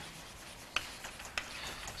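Chalk on a blackboard: two sharp taps about half a second apart, over faint scratching.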